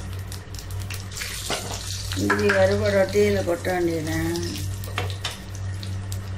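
Hot fat sizzling steadily in a small tempering pan on a gas burner, with a couple of light clicks. A voice speaks briefly in the middle.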